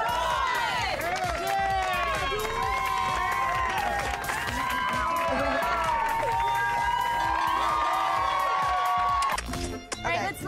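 Crowd of onlookers cheering and shouting all at once over background music. The din cuts off shortly before the end.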